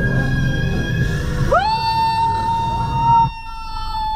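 Live gospel music with a woman's voice holding high notes. About one and a half seconds in she scoops up into a long, steady, loud held note, and the band drops out beneath it near the end.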